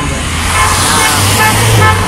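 Cars driving past close by on the road, their tyre and engine noise swelling to its loudest near the end.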